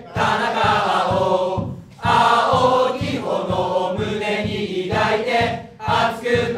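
Football supporters' chant sung in unison by a group of voices, in long phrases with a short break about two seconds in, over a steady beat.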